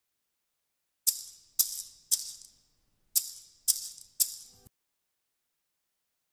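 A pair of maracas shaken in six sharp strokes: three about half a second apart, a short pause, then three more. Each stroke is a short, bright rattle that fades quickly.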